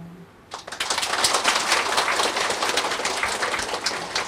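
A man's held sung note fades out. About half a second in, a crowd starts clapping, dense and steady.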